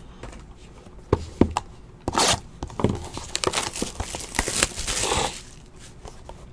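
Two light clicks of a plastic card case being set down, then plastic wrapping being torn and crinkled off a sealed trading-card box in irregular rips and rustles for about three seconds.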